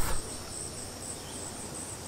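Steady, high-pitched insect chorus over a faint background hiss.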